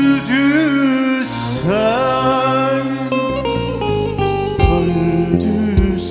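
Live band playing a Turkish folk-style song. A man sings an ornamented melody into a microphone over keyboard, long-necked saz and drums, with a steady bass line and regular drum hits.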